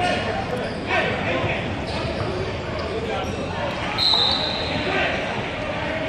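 Basketball bouncing on a hardwood gym floor amid indistinct voices and hall echo, with a brief high-pitched tone about four seconds in.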